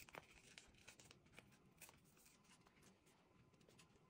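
Near silence, with faint scattered clicks and crinkles of kinesiology tape and its paper backing being handled and peeled.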